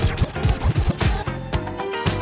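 A DJ scratching a vinyl record on a turntable over a playing hip hop/funk track, a run of quick back-and-forth strokes mostly in the first second.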